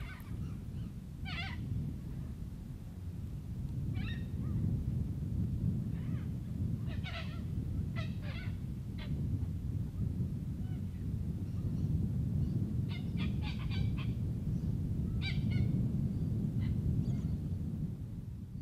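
Birds calling in short, scattered honking calls, with a quick run of several calls later on, over a steady low rumble.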